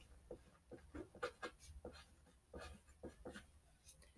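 Pen writing a word on a paper worksheet: faint, short strokes one after another, with a brief pause about halfway through.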